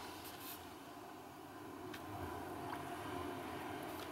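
Quiet room tone: a faint steady low hum with a few soft ticks.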